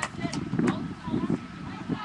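Indistinct voices of rugby players and spectators shouting during a tackle and ruck, with a few sharp clicks in the first second.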